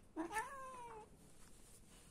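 A domestic cat meowing once, a call of about a second whose pitch rises briefly and then slides slowly down.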